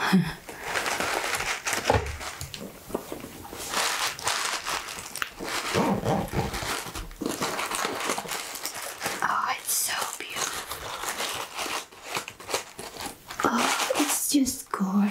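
Hands handling a quilted pink fabric makeup bag with a satin ribbon and lace trim: close-up rustling and crinkling of fabric as the ribbon is eased off and the zipper is pulled open.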